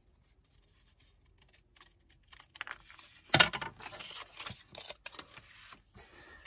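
Scissors cutting a Tyvek strip, then rustling as the strip is handled and laid on a kraft file folder. The first couple of seconds are nearly silent; after that come scattered short snips and crinkles, with one sharp snap about three and a half seconds in as the loudest sound.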